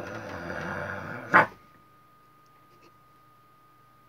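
A dog growling for about a second, then letting out one sharp, loud bark at the masked figure.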